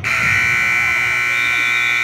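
Gymnasium scoreboard buzzer sounding one long, steady blast as the game clock hits zero, marking the end of a period. It starts abruptly and cuts off after about two seconds.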